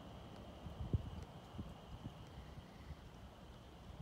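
Faint outdoor night background: a low rumble with a faint steady high tone, broken by a few soft knocks about one second in and again around a second and a half, typical of a handheld phone being shifted while filming.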